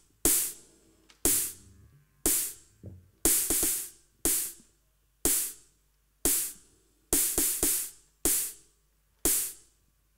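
Opening of a live band's song: a sparse beat of sharp percussion hits, about one a second and sometimes doubled, each ringing briefly, with near silence between them.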